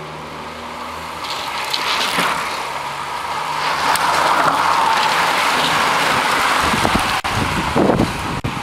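A bunch of road racing bicycles sweeping past close by: a rushing hiss of tyres and wind that builds to its loudest about halfway through.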